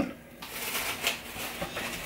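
Rustling and crinkling of a hoodie being pulled from its packaging and unfolded by hand, starting about half a second in.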